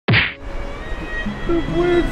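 A single sharp whack sound effect at the very start, dying away within a quarter second. Near the end a man wails a drawn-out "no".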